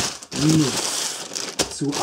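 Clear plastic bags crinkling as they are handled, with a short click near the end. A brief spoken sound comes about half a second in.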